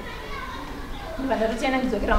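Speech: a voice talking in a large, echoing room, quieter at first and louder from just past a second in, over a low background rumble.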